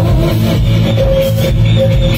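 Live amplified band playing a song with a steady beat: electric guitars, bass and percussion through a PA.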